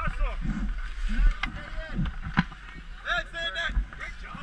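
Children's and adults' voices talking and calling out, with a higher-pitched call about three seconds in. Under them is a low wind rumble on the camera microphone, and a few sharp knocks sound in the middle.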